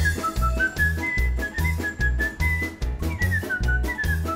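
A cartoon character whistling a jaunty tune over swing-style background music. Under it a bass line pulses about twice a second, with light percussion.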